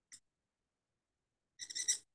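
Reed pen (qalam) nib scratching across paper as an ink stroke is drawn: a faint tick at the start, then about half a second of squeaky scratching near the end.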